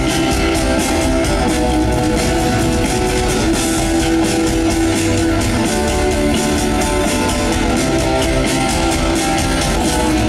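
Live rock band playing an instrumental passage with no vocals: electric and acoustic guitars over a steady drum-kit beat.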